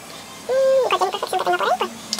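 A woman's voice making a wordless vocal sound, starting about half a second in on a held note that drops in pitch, then breaking into shorter rises and falls for about a second.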